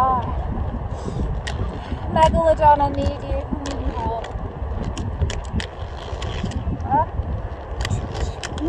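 Quad roller skate wheels rolling on an outdoor hard court, a steady low rumble with wind on the microphone and scattered sharp clicks. A few short warbling, voice-like tones sound over it about two, four and seven seconds in.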